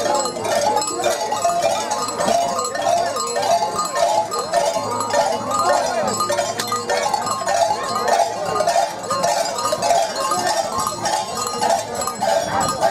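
Bells jingling in a steady rhythm over a crowd of voices, some of them singing.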